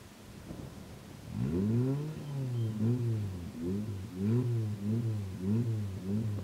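Engine of a specially prepared off-road 4x4 revving hard under load as it climbs a dirt obstacle: it rises sharply about a second and a half in, then surges up and down about twice a second.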